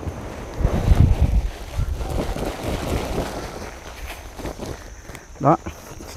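Dry chicken manure poured from a woven plastic sack into a heap of coconut coir, with the sack rustling. The pour is loudest about a second in and trails off.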